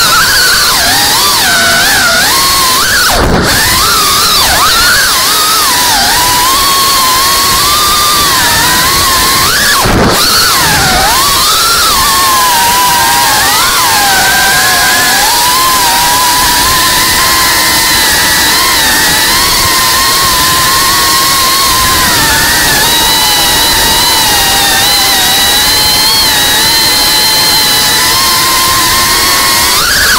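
FPV quadcopter's brushless motors and propellers whining in flight over heavy wind rush, the pitch rising and falling with the throttle. The whine drops sharply and comes back twice, about three and ten seconds in.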